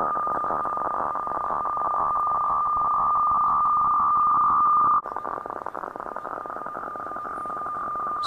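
HF radiofax (weather fax) transmission on 4610 kHz, heard as demodulated receiver audio: a steady whistling tone with a fast fluttering buzz as the fax scan lines come through. The level drops abruptly about five seconds in, and the signal carries on more quietly.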